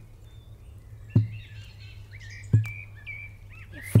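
Small birds chirping in short, quick calls, over a slow, deep thump that comes three times, about every second and a half, like the beat of a song.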